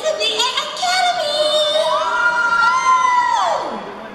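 A high voice singing a drawn-out phrase: a few short notes, then a long held note that rises about two seconds in and falls away near the end.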